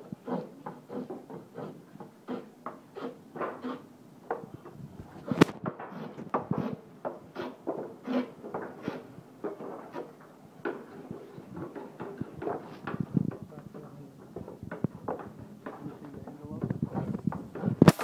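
Repeated wooden knocks and taps as a handle is worked into the splice of a willow cricket bat blade, about two to three a second, with one sharp, loud crack about five seconds in.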